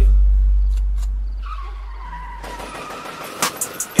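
A deep, sustained bass note from the hip-hop beat, fading slowly over about three seconds while the rapping and drums drop out. A faint, slightly wavering high tone sounds in the middle, and a couple of short hits come near the end as the beat comes back in.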